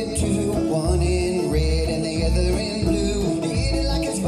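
Live acoustic string-band music: a five-string banjo picking over an upright bass that plucks low notes on a steady beat, in a country/bluegrass style.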